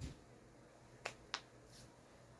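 Two short, sharp clicks about a third of a second apart, about a second in, over quiet room tone.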